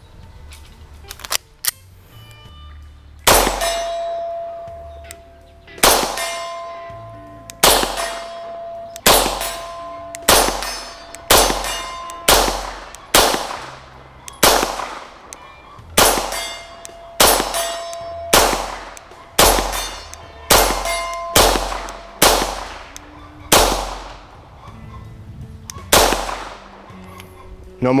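Beretta 92 9mm pistol fired slow and deliberate at distant steel targets: about eighteen single shots, roughly a second or two apart, beginning a few seconds in. Many shots are followed by the high ring of the steel plate being hit.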